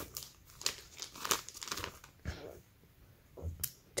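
Thin clear plastic envelope crinkling as it is handled: short, irregular crackles, densest in the first two seconds, then a few softer rustles and a bump or two near the end.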